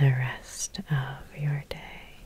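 A woman's soft, whispered voice in short breathy sounds, with two sharp clicks, one just past the middle and one near the end.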